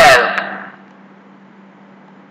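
A recorded voice finishing a single vocabulary word, cut short in the first moment, then a pause holding only a faint steady low hum and hiss.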